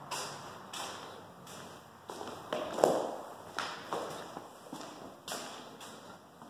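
Footsteps on a bare concrete floor in an empty drywalled room, one step roughly every second or less, with one louder knock a little before the middle.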